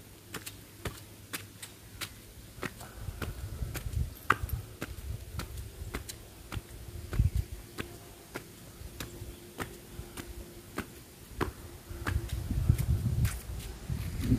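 Footsteps on stone steps and a tiled floor, sharp clicks at a steady walking pace of about two a second, with a few low rumbles breaking in.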